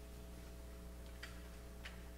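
Quiet room tone with a low, steady electrical mains hum, and two faint clicks, one a little past a second in and one near the end.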